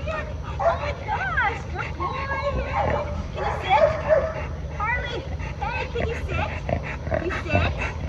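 Coonhound vocalizing in repeated short calls that slide up and down in pitch, over a steady low rumble.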